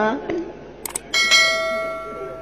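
Subscribe-button animation sound effect: a short mouse click about a second in, followed at once by a single bell ding that rings on and slowly fades.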